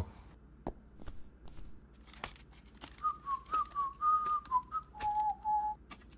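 A person whistling a short tune of a few wavering notes, ending on a lower held note. Faint scattered clicks come before it.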